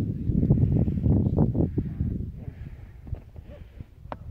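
Wind buffeting the microphone: an uneven low rumble, strongest in the first two seconds and dying down toward the end.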